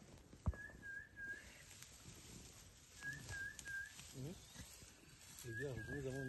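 A bird repeating a short song of three clear whistled notes, about every two and a half seconds. A single sharp snap sounds about half a second in.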